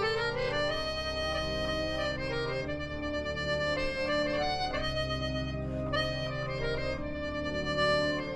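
Suzuki 37-key alto melodica playing a slow melody of held reed notes over sustained low accompanying notes.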